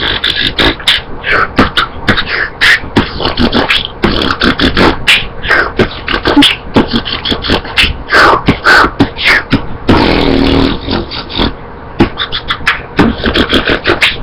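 Beatboxing: a fast, uneven stream of mouth-made drum hits and clicks, with a longer held, pitched sound about ten seconds in.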